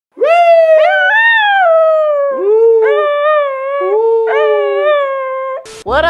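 A dog howling with a man howling along: a run of long wavering howls, each rising at the start and then slowly falling, two voices overlapping in places. It breaks off just before the end.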